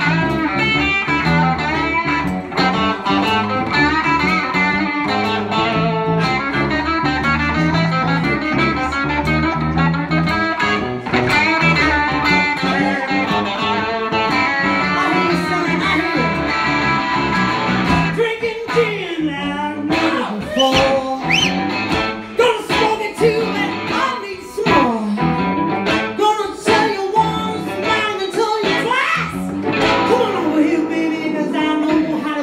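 Live blues band playing: electric guitars and harmonica over a full band. About eighteen seconds in the bass and fuller backing drop out, leaving a woman singing over sparse, punctuated accompaniment.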